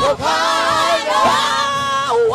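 Several gospel voices holding long, high, wavering notes together over an amplified sound system, with the congregation shouting along. The held notes break off at the very end.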